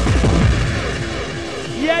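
Trance dance music from a live rave DJ set, recorded on cassette, with a steady driving beat. The kick drum and bass cut out under a second in, leaving the higher layers playing, and an MC starts shouting over it near the end.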